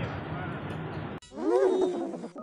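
A steady outdoor noise, cut off about a second in by a loud, drawn-out vocal exclamation from a man that rises and then falls in pitch, typical of an inserted comedy-clip reaction sound.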